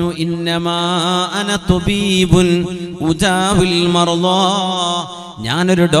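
A man's voice in slow, melodic chanted recitation, holding long notes with ornamented turns, and drawing a brief breath about five seconds in before starting a new phrase.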